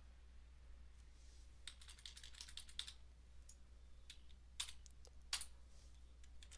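Faint computer keyboard keystrokes, a scattered handful of light clicks over a low steady hum, as a value is typed in.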